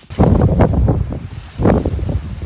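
Wind buffeting a phone's microphone at the seashore: a loud, rough low rumble that comes in two gusts, the second shortly before the end.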